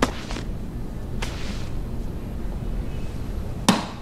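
Three sharp hits over a low steady rumble: one at the start, a longer, hissier one about a second in, and the loudest and sharpest just before the end.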